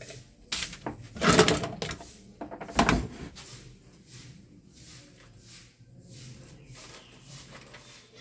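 Knocks and clatter of small objects being moved around while rummaging through a workshop for a dropped part, with the loudest knock about three seconds in, then fainter shuffling and rustling.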